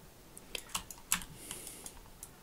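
Computer keyboard and mouse clicks: about five short, sharp clicks at uneven spacing, with a brief soft hiss about three-quarters of the way through.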